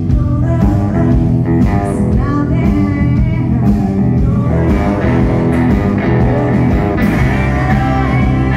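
Live blues-rock band playing: electric guitar and drums with a woman singing, loud and continuous.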